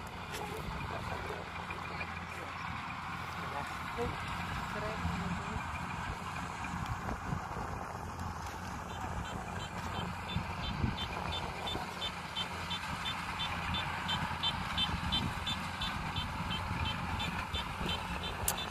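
Diesel engine of farm machinery running steadily. About halfway through, a run of short high beeps starts, about two a second.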